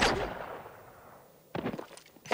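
A single gunshot with a long echoing tail that fades over about a second, followed about a second and a half in by a quick run of sharp cracks, from a TV episode's soundtrack.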